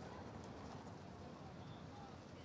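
Faint, steady outdoor ambience of a busy evening promenade: distant voices of people talking under a low background hum, with no single sound standing out.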